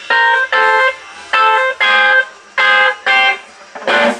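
Electric guitars in a blues band playing short, clipped chords in pairs, each pair followed by a brief gap, about three pairs in a row.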